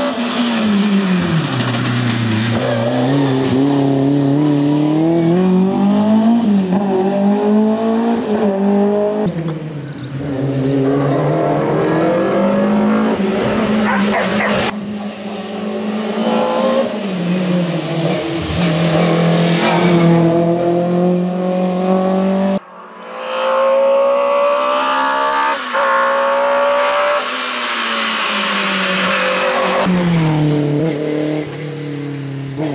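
BMW M3 E30 race car engine revving hard, its pitch climbing through the gears and dropping off under braking, pass after pass through hairpins. The sound breaks abruptly a few times where one pass cuts to the next.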